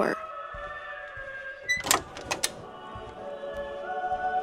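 A door being opened: two short clunks about two seconds in, over a steady droning music score.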